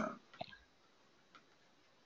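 Near silence, with a single faint short click about half a second in.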